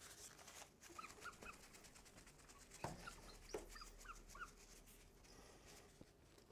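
Faint short squeaks of a marker writing on a glass lightboard, with two soft knocks about three and three and a half seconds in; otherwise near silence.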